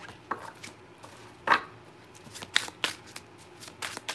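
Tarot deck being shuffled and handled by hand: a scattered run of short, sharp card clicks, the loudest about a second and a half in, with several more in the second half.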